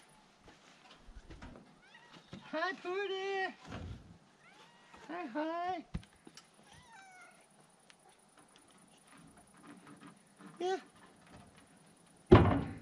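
A cat meowing twice: a drawn-out meow about a second long with a wavering pitch, then a shorter one a couple of seconds later.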